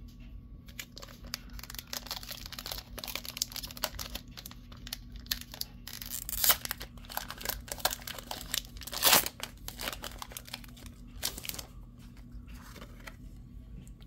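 Pokémon booster pack wrapper crinkling and being torn open by hand, with dense crackling throughout and two louder rips, about six and a half and nine seconds in. Trading cards are handled and set down.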